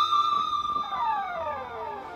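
Sustained electric lead guitar note, held and then sliding down in pitch over about a second, with echoes trailing the slide.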